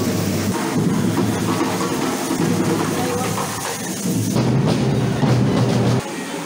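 Street correfoc: drumming under the steady hiss and crackle of hand-held fireworks spraying sparks, with crowd noise. The low drum sound grows heavier about four seconds in.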